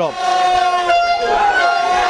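A horn sounding in one long held blast, with a slight change in its tone about a second in.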